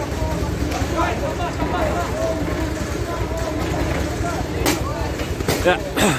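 Steady low rumble of an idling vehicle engine under people talking, with a sharp knock about four and a half seconds in.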